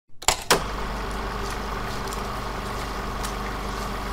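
A motor vehicle engine idling steadily, after two sharp clicks in the first half second.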